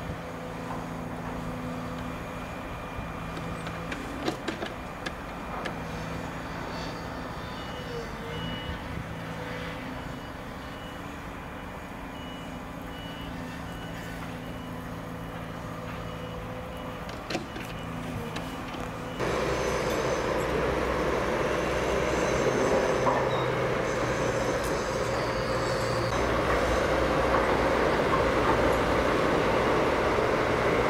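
Heavy diesel construction machinery running at a distance, with a reversing alarm beeping repeatedly in the middle stretch. About two-thirds through, the sound jumps louder to a nearer diesel engine running, such as an articulated dump truck working the site.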